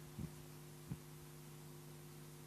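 Steady, faint electrical hum from the conference room's microphone and sound system, with two faint low thumps, one just after the start and one about a second in.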